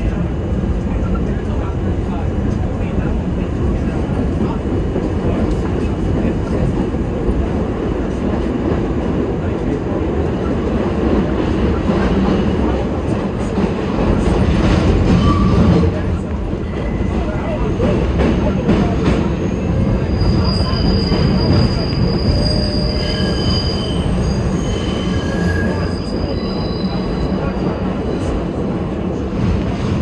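Budd R32 subway car heard from inside, running at speed with a steady loud rumble of wheels on rail. From about two-thirds of the way through come short, high-pitched squeals of the wheels.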